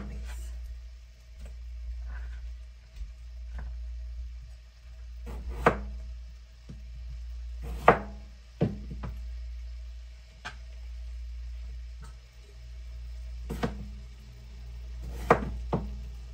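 Knife cutting a Yukon potato on a cutting board: about a dozen irregular, spaced-out knocks of the blade hitting the board, the loudest around the middle. A steady low hum runs underneath.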